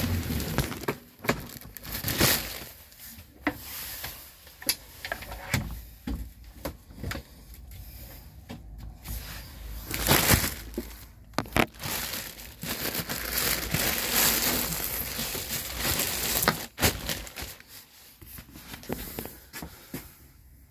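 Handling noise: irregular rustling and crackling with many scattered knocks and clicks.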